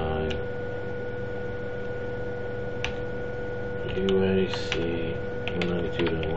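Computer keyboard being typed on, a few scattered key clicks over a steady electrical hum.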